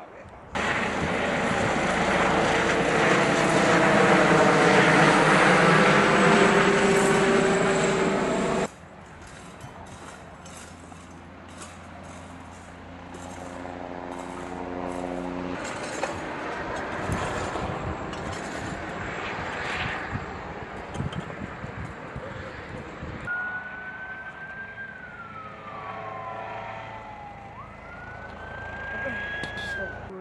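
Aircraft passing low overhead: a loud, rushing engine sound with a slowly sweeping pitch pattern, cut off abruptly about nine seconds in. After it comes quieter outdoor ambience with a steady hum, and near the end a high whistling tone glides down and then rises again.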